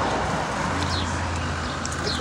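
Steady outdoor background noise with a low hum, and a few short, high, falling bird chirps over it.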